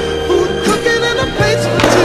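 Skateboard deck and wheels knocking on pavement, with a sharp crack near the end and a softer knock before the middle, under a loud music track with a steady bass line.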